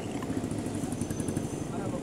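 Steady low rumble of road and engine noise inside a car's cabin while driving.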